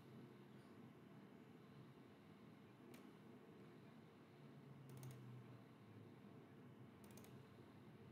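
Near silence: room tone with a steady low hum and a few faint computer mouse clicks, one about three seconds in, then small clusters of clicks around five and seven seconds in.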